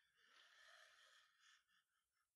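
Near silence: room tone with only a faint, soft rustle.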